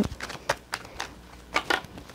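A deck of tarot cards shuffled overhand by hand: cards slapping and clicking against each other in irregular strokes, with a quick cluster of clicks near the end.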